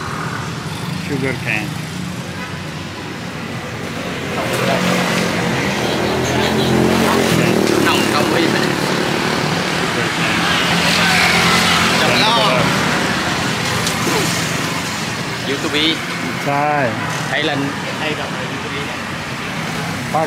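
Road traffic passing along the street, the noise swelling through the middle stretch as vehicles go by. Voices of people close by come in near the end.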